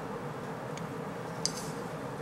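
A bamboo tea scoop (chashaku) scooping powdered matcha from a metal tea tin, with a faint tick and then one small, sharp click about one and a half seconds in, over a steady room hum.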